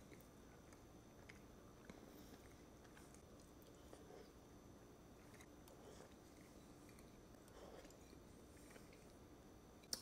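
Near silence with faint chewing of a soft mouthful of egg and sausage, a few soft scattered clicks, over a faint steady hum.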